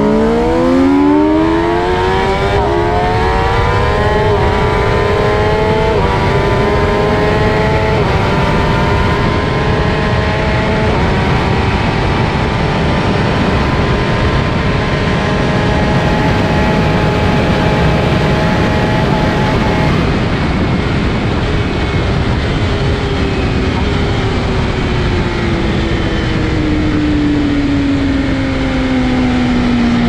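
A superbike's inline-four engine accelerating hard under full throttle, its note climbing through several upshifts. It holds at high revs near top speed against heavy wind rush, then falls steadily as the bike slows down near the end.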